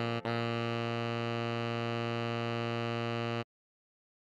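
Synthesized tenor saxophone playing a brief note, then one long low C held steadily for about three seconds that cuts off suddenly.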